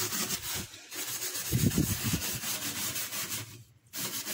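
A scouring pad scrubbed back and forth on a soapy metal gas stove top, working off burnt-on grease: a fast, scratchy rubbing with short pauses about a second in and just before the end.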